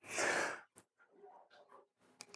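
A man's sigh, an audible breath out into the microphone lasting about half a second, followed by near silence.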